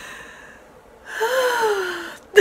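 A woman laughing in a laughter-yoga exercise: first a breathy outbreath, then about a second in a drawn-out, breathy vocal 'haaa' that slides down in pitch.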